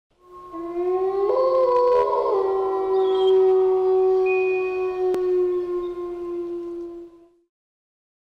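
A wolf howl sound effect: one long howl that rises in pitch at the start, holds a steady note, and fades out about seven seconds in.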